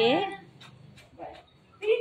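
A pet dog giving a short whine near the end, as it sits waiting for a treat, after a woman's voice trails off at the start.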